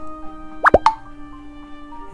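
Soft background music with a single quick 'plop' sound effect, a fast swoop up in pitch and back down, about two-thirds of a second in.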